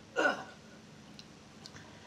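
One short breathy vocal sound from a man at a microphone, about a quarter second in, like a quick catch of breath, followed by quiet room tone with a couple of faint ticks.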